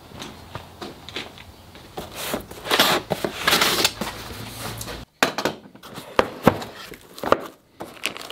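Handling noise: shuffling and rustling, then several sharp knocks and clicks in the second half.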